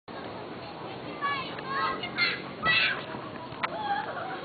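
Chatter of a seated group of people, with high-pitched children's voices calling out loudest between about one and three seconds in.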